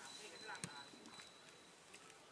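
Faint distant voices of people talking, with one sharp knock a little over half a second in and a faint steady high tone underneath.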